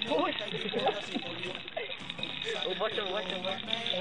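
A voice over background music; no frying sound can be made out.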